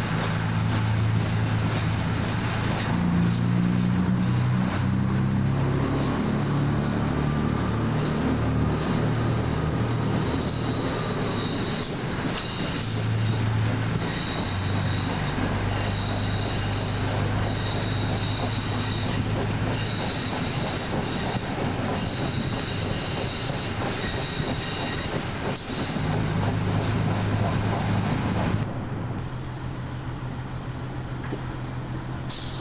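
Fiat ALn 668 diesel railcar under way, heard from an open window: its diesel engines run with the pitch stepping up and down, over the noise of the wheels on the rails. A thin high wheel squeal comes and goes through the middle. The sound changes abruptly near the end at a cut in the tape.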